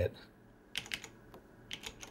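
Keys being pressed on a lighting console's keypad: a few short clicks, a pair just under a second in and a few more near the end.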